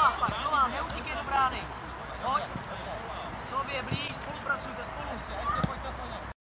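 High-pitched children's voices shouting and calling during a youth football game, with a few dull thuds of the ball being kicked.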